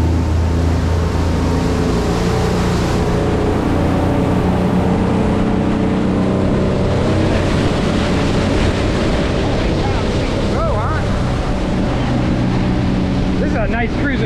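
Twin Suzuki outboard motors running steadily at speed, their engine drone over a continuous rush of wake water and wind as the boat planes.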